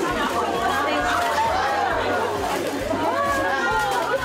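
Many people talking at once: overlapping chatter from a crowd in a room, with no single voice clear.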